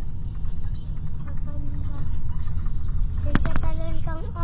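Steady low road and engine rumble heard from inside a moving vehicle crossing a bridge, with a cluster of three or four sharp clicks near the end.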